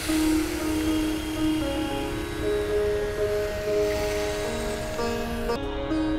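Instrumental background music with long held notes, over a hiss of a pan sizzling that cuts off suddenly near the end.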